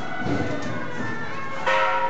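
Ringing metal percussion from a temple procession: gongs and bells sound together in a dense wash of held tones. A sharp metallic strike comes near the end and rings on.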